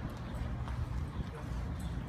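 Footsteps of a man and a Great Dane walking on asphalt: a few faint, irregular ticks over a steady low rumble.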